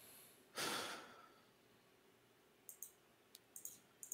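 A person's breath or sigh, about half a second long, a little after the start, followed by a few faint short clicks in the second half.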